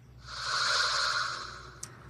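A whoosh sound effect for a news graphics transition: an airy noise that swells up to a peak about a second in and then fades away, followed by a brief click near the end.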